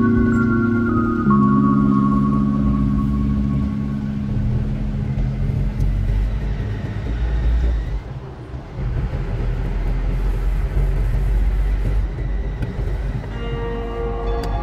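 Background music with held chords fading out over the first few seconds, leaving the steady low rumble of a car driving on a smooth road, heard from inside the cabin. Music starts again near the end.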